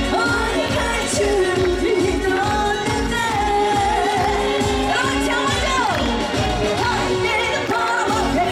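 A woman singing a Korean trot song live into a microphone over a band backing with a steady beat of about two pulses a second.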